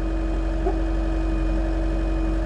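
Mecalac 6MCR tracked excavator's diesel engine running steadily with no load, a constant low hum with a steady whine riding on it.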